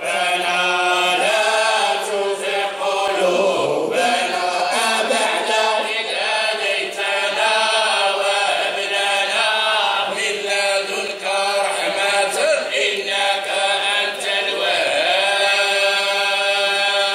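Men's voices chanting a devotional Islamic chant, with long, melismatic lines that glide and are held, and no instruments.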